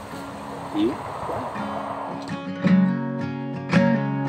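Acoustic guitar music begins about halfway in, with strummed chords ringing. Before it there is a short murmured voice over a soft hiss.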